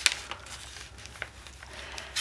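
Faint rustling of a sheet of printer paper being pressed and creased flat by hand on a cork board, with a couple of small ticks.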